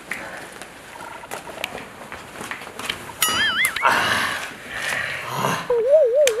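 Edited-in comedy sound effects: a short warbling electronic tone about three seconds in, then a breathy rush, and another wobbling tone starting near the end.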